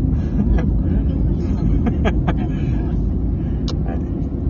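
Car driving, heard from inside the cabin: steady low engine and road rumble, with a few short clicks around two seconds in and again near the end.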